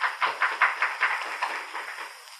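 Audience applause, a quick run of claps that dies away near the end, over the steady hiss of an old recording.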